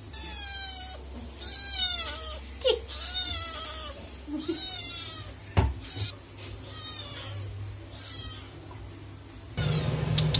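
A kitten meowing over and over, about six drawn-out meows that grow fainter. Two sharp knocks come about a third and halfway through.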